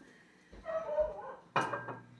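A short, faint vocal sound, then about one and a half seconds in a sharp knock with a brief ring as bottles and a grinder are set down on a granite counter. A low steady hum follows.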